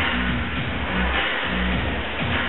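Music with a heavy bass line playing steadily.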